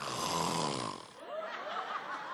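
Studio audience laughing after a punchline, loudest in the first second and then dropping away to scattered laughs.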